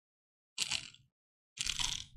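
Two short drinking sounds, sips from a bottle close to the microphone, about half a second and a second and a half in.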